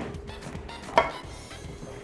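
Light kitchen handling at a glass dish, with one sharp clink that rings briefly about a second in, over low background music.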